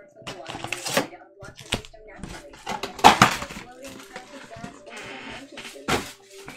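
Cellophane-wrapped trading card packs being handled and stacked on a table: an irregular run of crinkles and light clicks and taps, the loudest about three seconds in.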